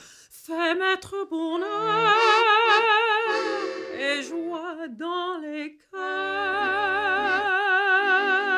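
Mezzo-soprano singing in long phrases with a wide vibrato, over a soft piano accordion accompaniment. There are brief pauses for breath just after the start and about six seconds in.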